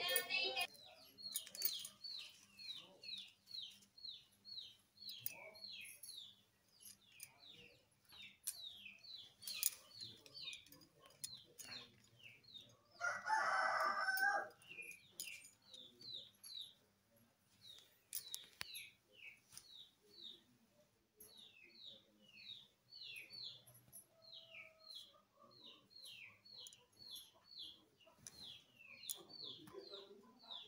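Birds chirping over and over in short falling chirps, several a second, with one louder call lasting about a second around the middle.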